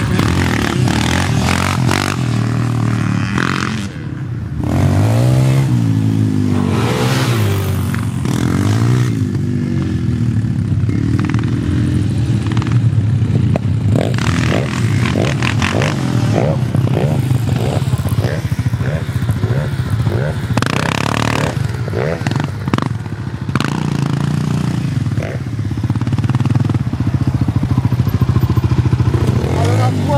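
Several sport quad (ATV) engines running and revving as the quads ride around close by. The pitch rises and falls again and again with the throttle.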